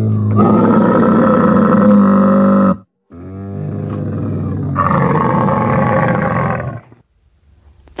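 A camel calling: two long, low calls, the first about three seconds long and the second about four, with a brief break between them.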